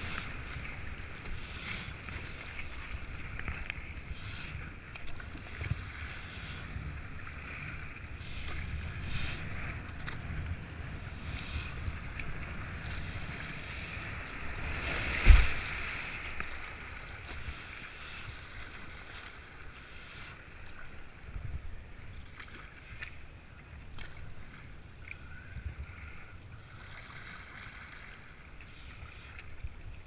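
River whitewater rushing around a kayak as it is paddled through rapids, with scattered splashes. There is one loud thump or splash about halfway through.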